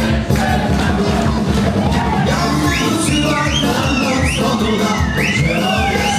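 Live dance band with keyboard, saxophone, bass guitar and drums playing a steady beat with a strong bass; a high melody line of swooping notes comes in about halfway.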